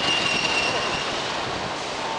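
A city bus passing close by with a steady, high-pitched squeal that fades out about a second in, over the noise of street traffic.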